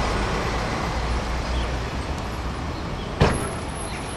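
Bus engine and street traffic noise, a steady low rumble as a minibus moves off, with one sharp click about three seconds in.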